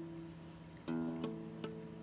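Nylon-string guitar harmonics ringing: one tone sustains from before, then about a second in fresh notes are plucked and ring together, compared against each other to check the tuning of neighbouring strings.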